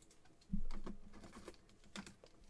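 Trading cards and a plastic card holder handled by hand: a soft knock about half a second in, then a run of light, irregular clicks and taps.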